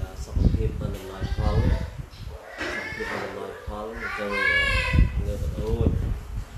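A man speaking, with a higher, wavering bleat-like call from about two and a half to five seconds in.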